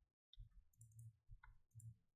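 Near silence broken by a few faint, short clicks of a computer mouse and keyboard in use.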